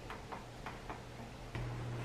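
Faint, light clicks, about three or four a second, as a coffee maker is handled. Near the end a steady low hum comes in.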